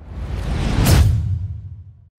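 Whoosh sound effect with a deep rumble, swelling to a peak about halfway through and then fading away, the swoosh of an animated logo reveal.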